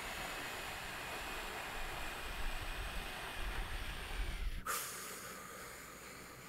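A man blowing out a long, steady stream of air through his lips as a controlled breath-control exercise for wind playing, exhaling over a count of six. The blowing stops suddenly about four and a half seconds in, leaving a fainter breath.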